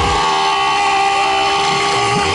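One long, steady held note with a clear pitch, coming over the battle's amplified sound system.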